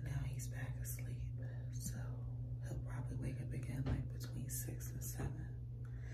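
A woman whispering to the camera in short, breathy phrases, over a steady low hum.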